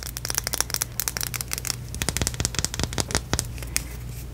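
Long fingernails tapping rapidly on a silver makeup tube wrapped with rubber bands: fast, irregular clicking, many taps a second.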